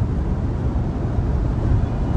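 Steady low road and tyre rumble inside the cabin of a Tesla electric car cruising at freeway speed.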